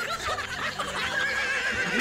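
Two people laughing hard: short breathy laughs break up early on, then a high-pitched, drawn-out squealing laugh is held for about a second near the end.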